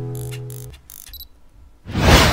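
The last strummed guitar chord of a corrido rings out and cuts off less than a second in. A few faint clicks follow, and near the end a loud whoosh sound effect sweeps in.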